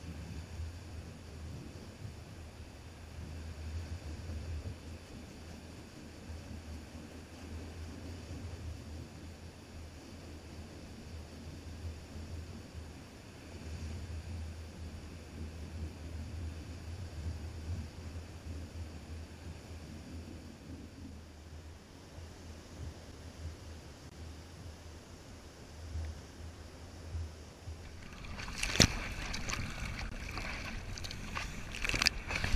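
Wind rumbling on the microphone over waves breaking on the shore, a steady low noise. About two seconds before the end it changes to close water splashing and sloshing around a surfboard being paddled.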